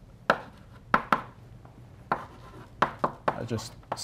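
Chalk on a blackboard while writing: a series of sharp, irregular taps and short scratches as the strokes are made.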